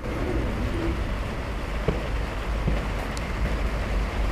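Steady noisy rush of a small electric street sweeper still sweeping, its rotating side brushes working on the asphalt as it reverses slowly, with a fluctuating low rumble of wind on the microphone.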